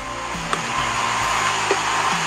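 Steady rushing noise, slowly getting a little louder, under soft background music with sustained notes.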